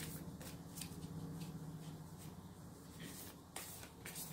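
A large oracle card deck being shuffled by hand, cards slid from one hand to the other in a series of soft, irregular swishes. A faint steady low hum runs underneath.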